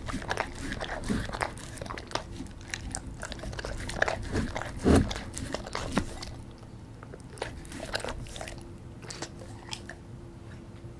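A German Shepherd eating pizza close to the microphone: biting and chewing, busiest in the first six seconds, with two louder crunches about four and five seconds in. After that come only sparser mouth clicks as he licks his lips.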